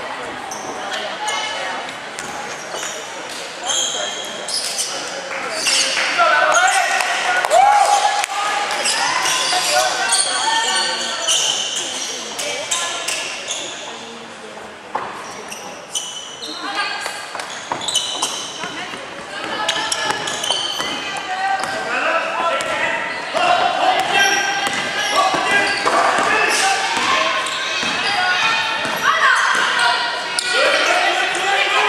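A basketball bouncing on a hardwood court, mixed with players' and spectators' voices calling out, echoing in a large gymnasium.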